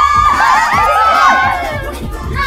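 Several young women shrieking and cheering together, their high overlapping voices easing off near the end, over a dance-pop track with a heavy bass beat.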